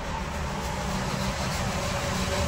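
Paint booth's air-handling fans running, a steady low rumble with a faint hum.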